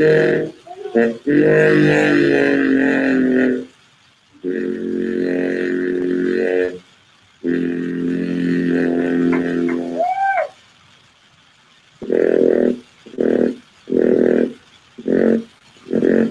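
A man's voice chanting without words: three long, held droning notes, the last ending in a slide up and down in pitch, then short syllables in a steady rhythm of about one a second.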